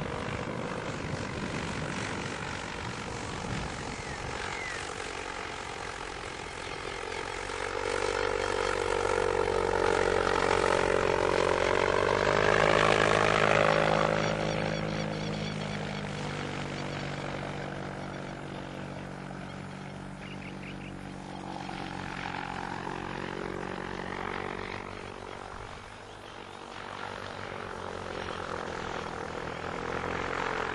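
Electric microlight trike's propeller and motor humming in flight overhead. It grows louder to a peak a little before halfway and drops in pitch as it passes, then fades and swells again near the end.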